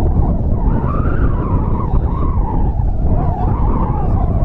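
Heavy wind rumble buffeting the microphone, with distant voices shouting across the field on wavering held pitches.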